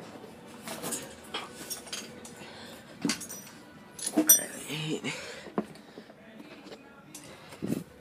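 Scattered light clicks and clinks from the phone camera being handled and swung about, with a few brief muffled voice sounds.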